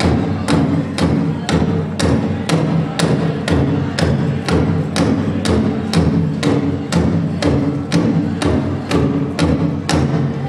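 Powwow drum group: a big drum struck in a steady beat, about two strikes a second, while the singers hold a sung line over it, accompanying fancy shawl dancing.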